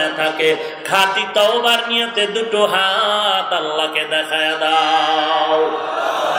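A man's amplified voice chanting an Islamic supplication (munajat) for repentance in long, drawn-out melodic notes that waver and glide, with no break.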